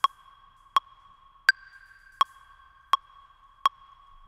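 Electronic metronome count-in: evenly spaced beeps about three-quarters of a second apart (around 80 beats a minute), each with a short pitched ring, and a higher accented beep on the first beat of the bar about a second and a half in.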